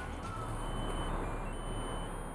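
Steady, even background noise with no distinct events. The opened musical greeting card plays nothing because its battery is flat.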